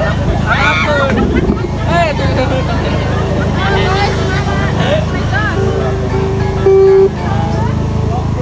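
Crowd of people talking and calling out over a steady low drone, with a loud held single-pitch note about seven seconds in.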